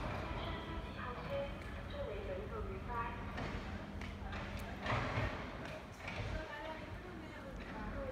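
Indistinct voices talking, with a faint steady low hum that stops about five seconds in.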